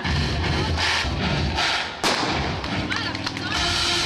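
Noise from a crowd at a race start, then a single sharp bang about halfway through as the start signal fires and the runners set off. Music comes in near the end.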